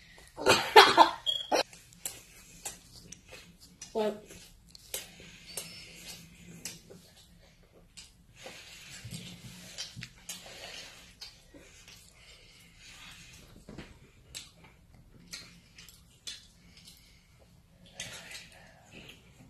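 A child's voice sounds briefly about a second in, followed by faint rustling and scattered small clicks and knocks.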